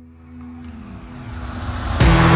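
Ferrari 458 Spider's naturally aspirated V8 running at steady revs, a low drone that grows steadily louder.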